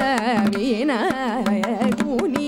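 Carnatic vocal music: a woman singing with constant swinging pitch ornaments (gamakas), with the violin following her line, sharp mridangam strokes, and a steady drone beneath.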